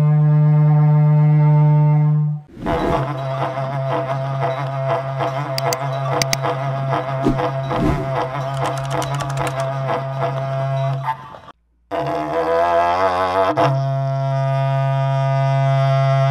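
Berrante, the long ox-horn trumpet of Brazilian cattle drovers, blown in a loud, steady low note that breaks off about two and a half seconds in. A horn drone of the same pitch then carries on under a busier, wavering sound, cuts out for a moment near twelve seconds, and returns steady to the end.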